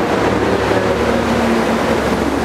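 Loud, steady background noise covering all pitches, with a man's voice faintly audible over it.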